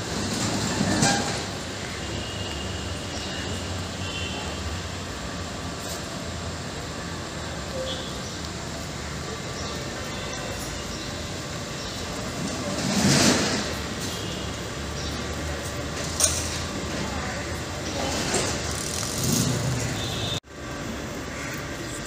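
Street ambience outdoors: a steady hum of road traffic, with vehicles passing about a second in, around thirteen seconds in and again near nineteen seconds, under faint voices. A single sharp knock sounds about sixteen seconds in.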